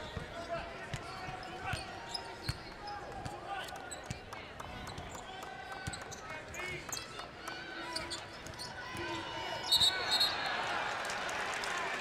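A basketball being dribbled on a hardwood court, with sneaker squeaks, players calling out and the murmur of an arena crowd. The crowd noise swells near the end.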